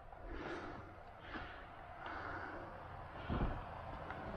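A dog climbing up into a car: soft rustling and breaths, with one dull thump a little after three seconds as it lands inside.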